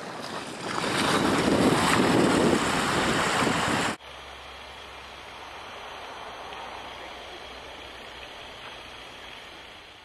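Ocean surf washing over a rocky shoreline, swelling over the first second and running loud for about four seconds. It then cuts off suddenly to a much quieter, steady outdoor hiss.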